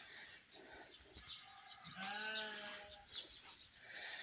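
A single faint bleat from livestock, one drawn-out call lasting about a second, midway through.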